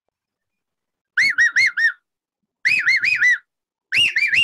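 A man whistling with his fingers to his lips, imitating the four-note call of the Indian cuckoo, the 'kaafal paako' bird. Two phrases of four rising-and-falling notes come about a second apart, and a third phrase begins near the end.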